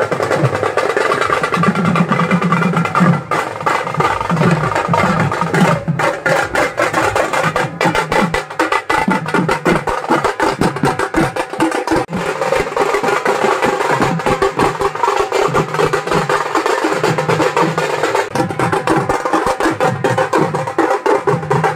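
A band of dhols, double-headed barrel drums beaten with sticks, playing a fast, dense rhythm of rapid strokes without a break.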